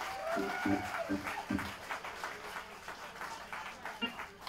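Small club audience clapping and cheering after a song ends, with one voice giving a long whoop that rises and falls about half a second in.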